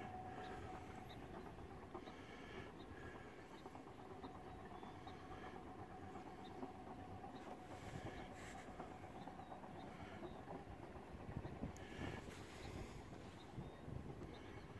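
Faint, steady rumble of a sailboat's inboard engine while the boat motors across open water.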